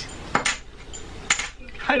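Two short, sharp clicks about a second apart, with faint noise between them.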